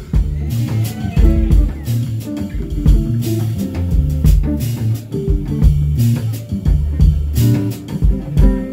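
Live jazz band playing an instrumental groove: electric bass, electric guitar and drum kit, with strong bass notes and steady drum and cymbal hits.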